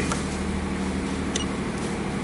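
Steady low machine hum with background fan-like noise, broken by two short clicks more than a second apart.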